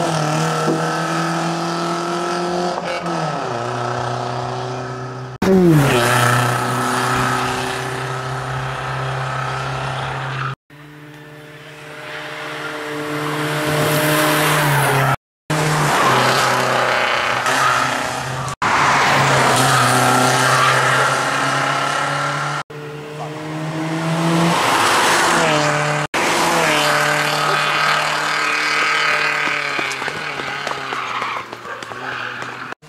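BMW E46 rally car engine driven hard, its note holding high and then dropping and climbing again at lifts and gear changes as the car passes, over tyre and road noise. The sound breaks off sharply several times.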